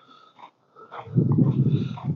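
A person's breath close to the microphone, a rough noisy exhale in the second half after a moment of near silence.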